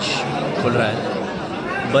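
Several voices talking over one another in a crowd, at normal speaking level.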